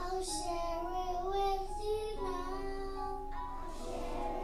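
A group of young children singing together, accompanied by an electronic keyboard playing steady held notes.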